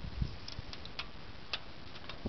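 A few light, irregular clicks and taps as a tape measure is extended and laid against the hopper's steel frame.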